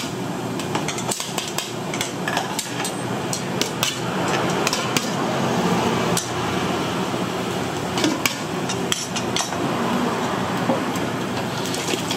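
A steel ladle and spoons clinking and knocking against stainless steel pots and bowls again and again as broth is ladled out, over a steady kitchen background noise.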